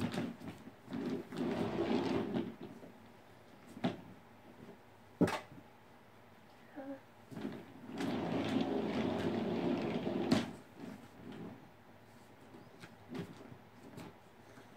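A plastic Sit 'n Spin toy being turned, its base whirring round on the carpet in two spells of a few seconds each, with a few sharp plastic knocks between.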